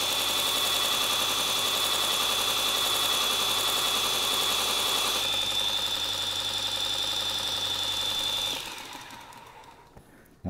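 Robert Sorby ProEdge belt sharpener running, with a plane iron held against its abrasive belt. About halfway through the grinding hiss eases as the blade comes off the belt, and near the end the motor is switched off and winds down.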